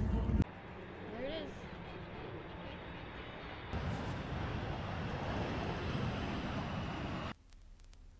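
Steady jet noise of a KC-135 Stratotanker making a low pass over the runway, getting louder about four seconds in, then cutting off abruptly near the end.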